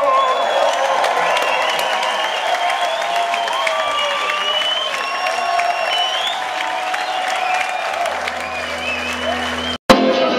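A rock concert crowd cheering and applauding between songs, with shouting voices and high whistles over the clapping. Near the end a low steady hum comes in, then the sound cuts off abruptly.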